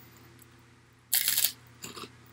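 A bite into a crisp Baken-ets pork rind: one short crackling crunch about a second in, followed by a few faint chewing clicks.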